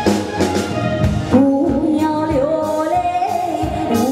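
Live band playing a pop song, with a woman's sung vocal coming in about a second and a half in, in long held notes that glide between pitches.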